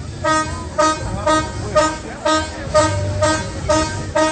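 A horn tooting in a rapid, even rhythm, about two short blasts a second, each with a sharp start.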